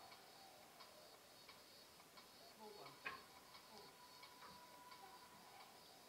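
Near silence with a faint, even ticking, about three ticks every two seconds, and one light knock of a wooden slat being handled about three seconds in.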